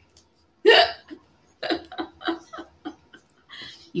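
A woman laughing: one loud burst, then a run of short, quick laughs at about five a second.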